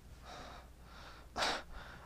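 A man drawing a short breath between sentences, about one and a half seconds in, heard close on a clip-on microphone, with fainter breathing before it.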